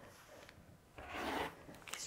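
Rotary cutter blade rolling through layered cotton fabric along the edge of an acrylic ruler on a cutting mat: one short cutting stroke about a second in, lasting about half a second.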